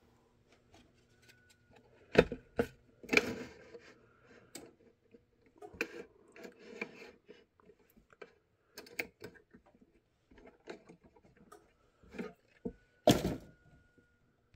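Scattered knocks, clunks and clatters of hands handling an aluminium vacuum-forming frame and a foam holster mold on a metal vacuum table, with the loudest knock near the end.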